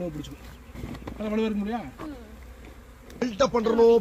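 Honeybees buzzing close by in short spells, the pitch of the buzz wavering as they fly around.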